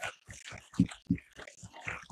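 Many camera shutters firing in quick, irregular clicks, several in every second.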